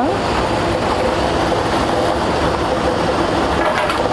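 Lottery draw machine running steadily: its air blower and the numbered balls rattling around inside the clear chambers.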